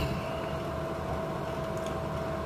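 Steady machine hum with a constant pitch under a low rumble, preceded by a brief click at the very start.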